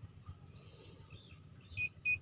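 Faint steady high background, then near the end a metal detector lowered into a hollow tree trunk gives a short high beep. It is the first of a quick run of beeps that signal metal inside the trunk.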